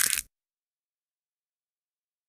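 A brief, bright, mostly high-pitched sound effect for the animated channel logo, ending about a quarter second in, followed by dead digital silence.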